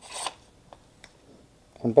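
A short rubbing scrape as a one-handed bar clamp is picked up and swung into place, followed by a couple of faint clicks of its plastic and steel parts.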